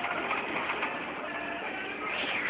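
A man's indistinct, low vocal sounds, muffled and not forming clear words.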